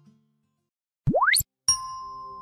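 Logo-animation sound effects: a single cartoonish tone sweeping rapidly upward for about a third of a second, then, after a short gap, a bright ding that keeps ringing.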